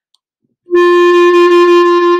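Jupiter JCL1100S wooden B-flat clarinet, on its stock mouthpiece and ligature, playing one steady held open G that starts cleanly under a second in. The note responds right away, with a good sound.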